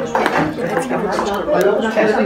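Indistinct talking: voices in the room, with no clear words.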